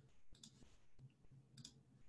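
Near silence with two faint double clicks, about a second and a quarter apart.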